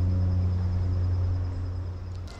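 A low, steady engine drone, fading away near the end.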